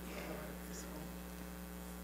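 Steady electrical mains hum with a faint brief sound near the start.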